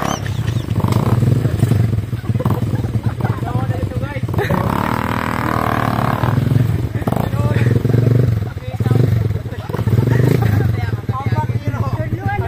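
Motorcycle engine running and revving up and down, with people's voices.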